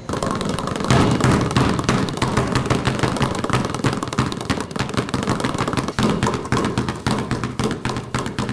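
A dense, fast run of irregular percussive knocks and thuds that starts suddenly and keeps going, loud and busy.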